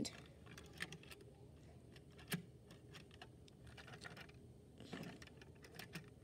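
Faint, scattered small clicks and taps of an HO-scale model caboose being fitted onto a piece of HO track by hand, the loudest click a little over two seconds in.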